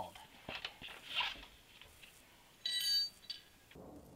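A few light clicks of handling, then, about two-thirds of the way through, a short bright ringing clink of several high tones, lasting under half a second and cutting off abruptly.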